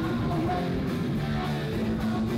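A live hardcore punk band playing: distorted electric guitars, bass and drums in a loud, unbroken wall of sound.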